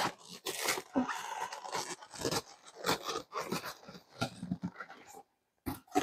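Cardboard shipping box being ripped and handled by hand: an irregular run of tearing and crunching that stops about five seconds in.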